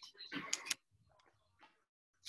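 A brief rustle with two sharp clicks close to the microphone, then near silence with one faint tick.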